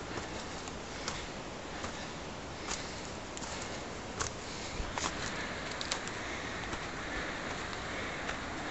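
Steady rushing of unseen waterfalls, a constant noise that thickens a little from about halfway through, with sharp footfalls on the trail's stones and dead leaves every second or so.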